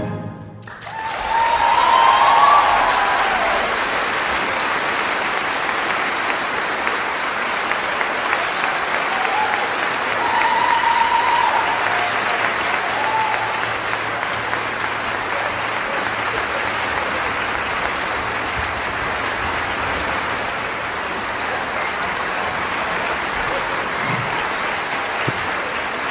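Concert-hall audience applauding steadily. The applause starts about a second in, just after the aria's final note, and keeps on without a break.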